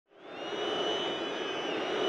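Football stadium crowd noise fading in, then holding as a steady crowd hum with a few thin high tones held above it.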